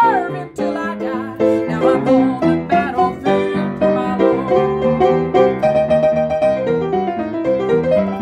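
Piano playing an instrumental break between verses of a gospel song: rhythmic chords with a moving melody on top. A held sung note glides down and ends in the first half second.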